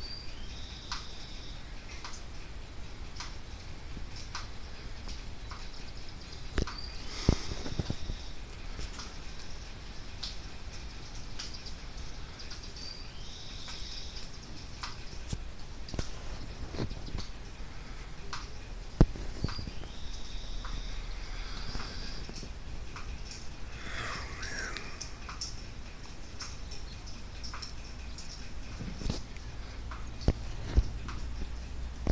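Birds calling, one repeating a short high call about every six seconds, with a few knocks and clicks from the phone being handled.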